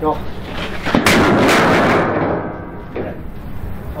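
A large, heavy steel plate toppling over and landing flat on timber blocks. It makes a single loud crash about a second in, and the ring fades away over about a second.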